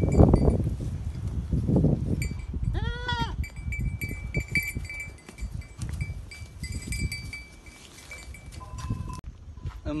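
A goat bleats once, a single call rising and falling in pitch, about three seconds in, over rustling and shuffling of animals in a straw pen.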